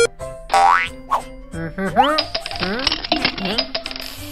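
Children's cartoon background music with sound effects: a quick rising whistle-like glide about half a second in, then cartoonish character vocal noises through the second half.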